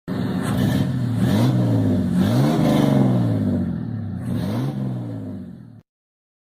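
A car engine revving: three throttle blips, each rising in pitch and falling back to idle, before the sound cuts off abruptly just before the end.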